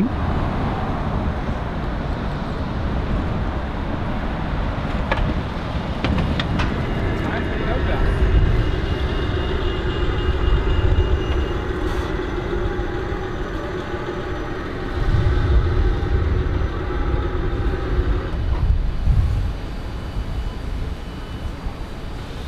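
A Yutong battery-electric single-deck bus moving along the street, its electric drive giving a steady whine of several high tones over tyre and road noise. The whine stops a few seconds before the end as the bus comes to a halt, leaving the low rumble of city traffic.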